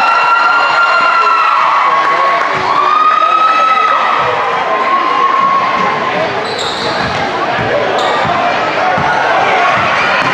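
Basketball game in a gym: a ball dribbled on the hardwood court, with repeated thumps in the second half, under a din of voices. Several drawn-out shouts come in the first half.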